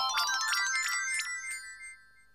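A twinkling jingle of quick, high, bell-like chime notes tumbling over one another, which rings out and fades away near the end.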